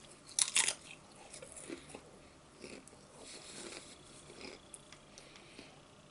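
A potato chip bitten with a loud crunch about half a second in, then crunched and chewed, the chewing growing quieter and fading out near the end.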